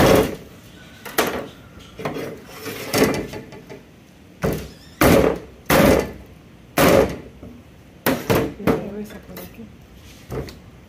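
A small hatchet chopping through a whole fish onto a wooden cutting board: about ten sharp thunks at uneven intervals.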